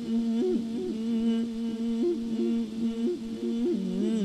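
A Buddhist monk's voice humming a long held note into a microphone in the melismatic Isan lae sermon-singing style. The pitch stays steady and is broken by quick upward flicks every second or so.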